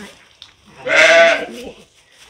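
A sheep bleats once, loud and wavering, about a second in, over the wet newborn lamb just set down in the straw.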